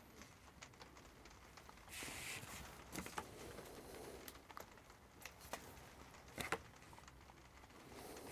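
Quiet handling noises of table tennis rubber sheets and a pen on a tabletop: scattered light clicks and taps, with a brief rustle about two seconds in.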